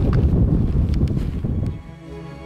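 Gusty wind buffeting the microphone: a loud, low, even noise with a couple of faint clicks, fading away near the end.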